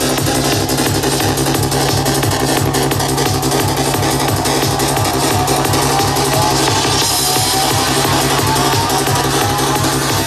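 Psytrance DJ set playing loud: a steady driving beat with a rolling, pulsing bassline, and a repeating synth figure that climbs in pitch through the second half.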